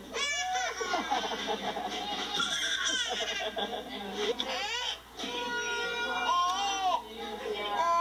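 A toddler crying in a run of high-pitched, rising and falling wails, with a short break near the middle.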